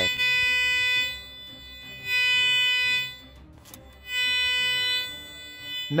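Garrett metal detector sounding its target tone: a steady high beep about a second long, repeated three times about two seconds apart, the sign of a strong signal from metal buried under the coil.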